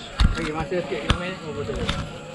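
Three sharp knocks close to the camera, the first a heavy thump about a quarter second in, the others about one and two seconds in: handling knocks from a rider and mountain bike standing at rest.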